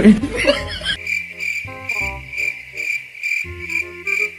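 A cricket-chirp sound effect: a high chirp repeating about three times a second, over light background music. It follows a short loud burst at the very start.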